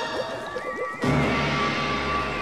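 Cartoon soundtrack: a run of quick rising animal-like cries over music. About a second in it switches suddenly to a louder held chord with a high wavering tone.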